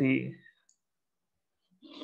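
A man's voice trailing off at the end of a word, then near silence, and a short, faint breath just before he speaks again.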